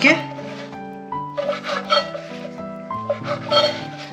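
Background music with long held notes, under a few sharp strokes of a kitchen knife cutting through bread crusts against a wooden cutting board.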